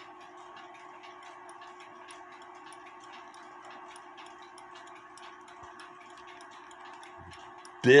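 Lux Pendulette clock's exposed brass pendulum movement ticking with its back cover off: faint, regular ticks over a steady low hum.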